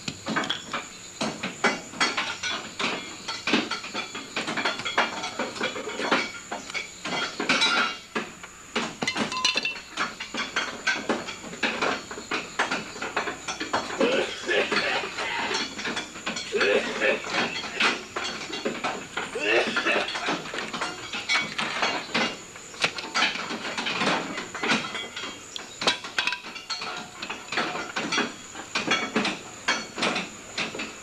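Hand tools clanking and ratcheting on metal as a car is repaired: a continual run of irregular clicks, clinks and knocks.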